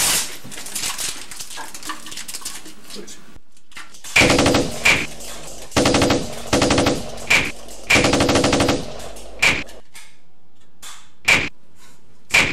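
Rapid automatic-gunfire sound effect in several short bursts starting about four seconds in, followed by a few single shots spaced out toward the end.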